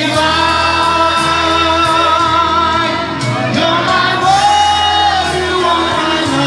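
A singer performing a slow song live over musical accompaniment, holding long notes with vibrato over a steady bass line.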